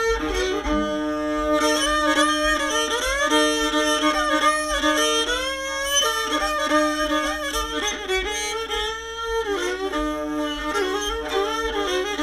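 Old-time string band instrumental break between verses: a fiddle plays the tune over a steady drone note held on a second string, with banjo accompaniment.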